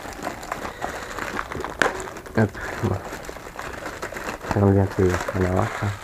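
Plastic packaging crinkling and rustling as it is handled, with scattered clicks, while a drone's foam-and-bag packaging is being opened. A man's voice murmurs briefly in the middle and again near the end.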